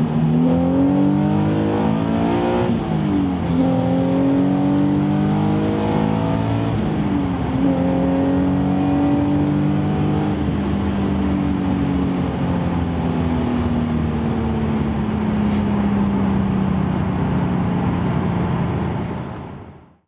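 Nissan 370Z's V6 engine, heard from inside the cabin, accelerating through the gears: the revs climb and fall sharply at an upshift about three seconds in and again about seven seconds in. It then holds a steady, slowly falling pitch and fades out at the end.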